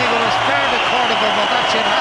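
Large arena crowd cheering and shouting, many voices at once at a loud, steady level, celebrating a boxing world-title win.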